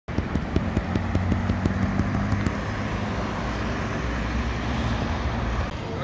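Ferrari SF90 Stradale's twin-turbo V8 running at low speed as the car rolls past, a steady low engine note. A quick run of sharp ticks sounds over it during the first two and a half seconds.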